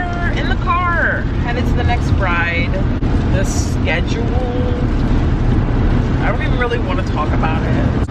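A woman talking over the steady low rumble of a moving car, heard from inside the cabin.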